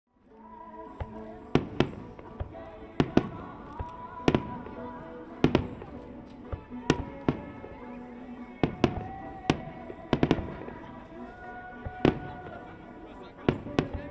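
Fireworks display: aerial shells bursting in an irregular string of sharp reports, one or two a second, some in quick pairs. Music with held notes plays underneath.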